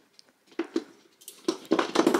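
A white wire laundry basket full of clothes clinking and knocking as it is pulled out of a closet and carried, a string of light metal taps that comes thicker in the second half.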